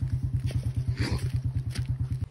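Small single-cylinder moped engine idling with a rapid, even pulse.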